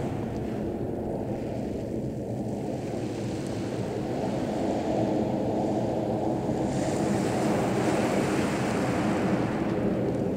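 Distant jet noise from a USAF F-15's twin turbofan engines, a steady rumble that grows louder and brighter from about halfway as the jet comes nearer.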